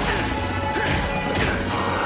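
Fight sound effects from an animated action scene: a heavy crashing impact at the very start and two more hits within the next second and a half, over background music.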